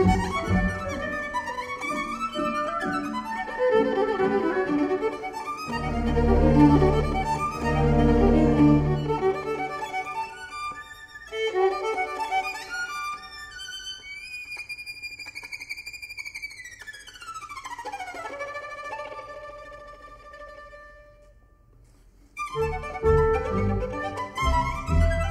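Solo violin playing a virtuosic passage over the orchestra, with low strings swelling under it around six seconds in. It then plays alone in a cadenza: a long slide down in pitch, then held notes that fade away. The full orchestra comes back in loudly near the end.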